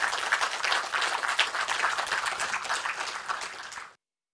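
Audience applauding: dense clapping that tapers slightly and cuts off abruptly at the end.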